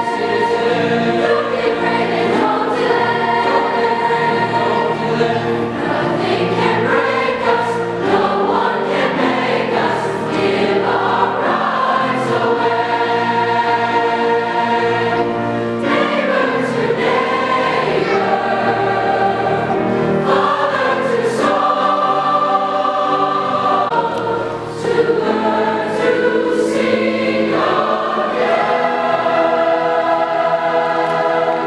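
A large mixed choir of school singers singing in harmony, with long held chords that change every second or two.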